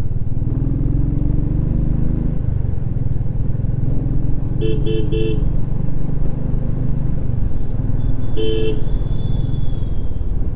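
Motorcycle engine running under way with a steady low rumble, its pitch rising over the first two seconds as it accelerates. A horn toots three short times about five seconds in and once more near the end.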